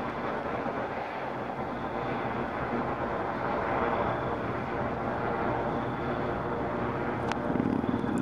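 A steady engine drone with an even, humming pitch that swells a little around the middle.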